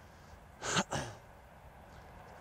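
A person sneezing once near the microphone: a short, sharp two-part burst about two-thirds of a second in.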